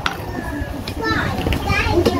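Indistinct voices of people around, some of them high-pitched, over a steady low background rumble.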